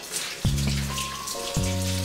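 Washing-up in a kitchen sink, a light patter of water and sponge in short spells, over soft background music with slow held notes.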